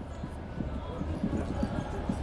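Passenger train running, heard from inside the carriage: a steady low rumble with quick, irregular small knocks from the wheels and car body.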